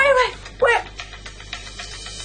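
A woman whimpering in pain: a high cry that falls in pitch and trails off right at the start, then a second short falling cry about half a second later.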